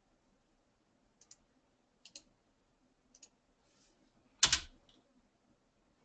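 Soft clicking at a computer while posting a link in a chat: three faint quick double clicks about a second apart, then one much louder short thump about four and a half seconds in.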